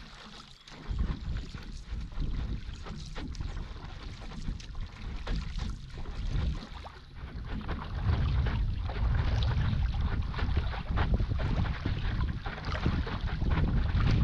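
Water splashing and rushing along a moving stand-up paddleboard, with wind rumbling on the microphone from about a second in, heavier from about eight seconds in.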